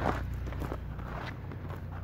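Footsteps of a person walking, over a steady low rumble on the microphone.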